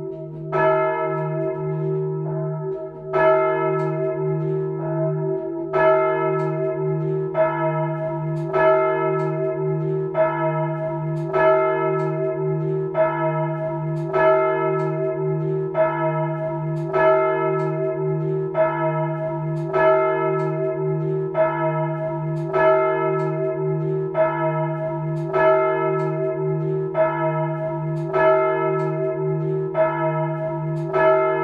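A swinging bronze church bell in a tower bell frame, its clapper striking about every 1.4 seconds. The strokes alternate stronger and weaker, over a steady low hum that carries on between them.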